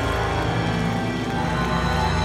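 Live black metal band playing a passage of sustained distorted guitar and synthesizer chords over a heavy low end.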